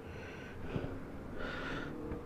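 Faint breathing close to the microphone: two soft breaths in the pause between sentences.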